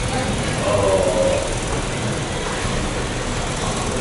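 Steady, even room noise throughout, with a voice speaking briefly from about half a second to a second and a half in.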